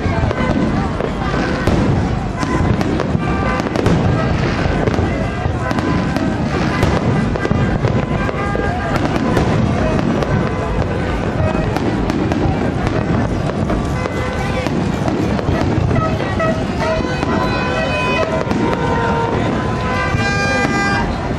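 Aerial fireworks display: a continuous run of shell bursts and crackling, with many sharp pops close together.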